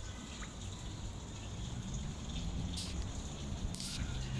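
Water from a burst underground cold-water pipe welling up and running into a flooded sidewalk puddle, over a steady low rumble. Two short hissing bursts come near the end.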